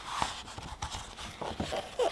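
Paper pages of a book being flipped by hand: a rustling swish as a page turns near the start, then several quick flaps and taps as more pages fall and the book is opened flat.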